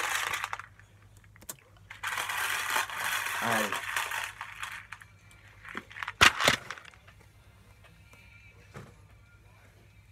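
Loose M&M candies rattling in a plastic bowl as a hand digs in, a longer spell of rustling about two seconds in, then two sharp knocks a little after six seconds in, the loudest sounds.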